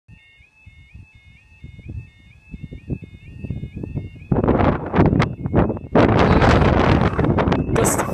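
A level crossing warning alarm sounds a two-tone warble, the tones stepping up and down, as the amber light gives way to the flashing reds. From about four seconds in, a loud, rough rushing noise, likely wind on the microphone or a passing vehicle, drowns it out.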